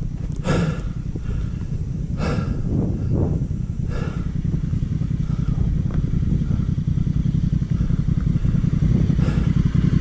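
Honda Africa Twin's parallel-twin motorcycle engine running as the bike rides down a rocky dirt trail, growing gradually louder as it approaches, with a few short knocks.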